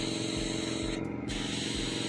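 Airbrush spraying paint onto denim: a steady hiss of air that breaks off briefly about a second in, then resumes.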